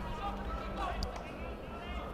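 Faint background of a sports ground between commentary: distant voices over a low steady hum, with one light tick about a second in.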